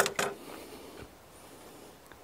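Steel combination square set down on a hewn log: two sharp clacks a fraction of a second apart with a brief metallic ring, and a faint tick about a second later.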